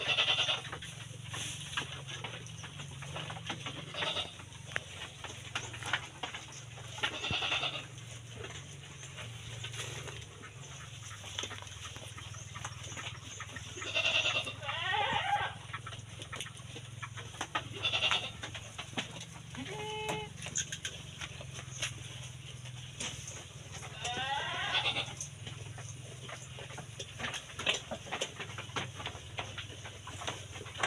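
Penned sheep bleating now and then, several separate bleats a few seconds apart, over a steady low hum.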